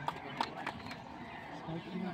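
A few light footsteps, about half a second apart, as the long jumper climbs out of the sand pit after landing, under a low murmur of onlookers' voices.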